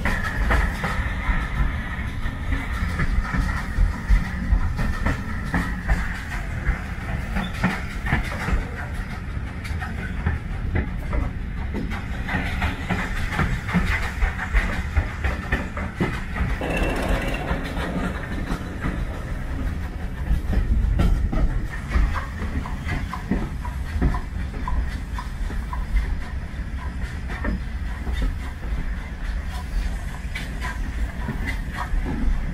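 Heritage steam train carriage running along the line, heard from an open window: a steady low rumble with wheels clicking over the rail joints, briefly louder about two-thirds of the way through as it runs close past other rolling stock.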